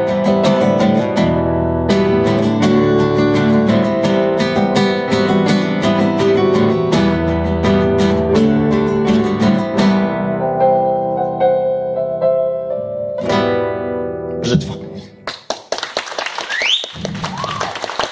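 Acoustic guitar strumming chords over keyboard accompaniment as the instrumental ending of a song, thinning out to a last chord about 13 seconds in that rings briefly. About a second later audience applause breaks out, with a rising whistle in it.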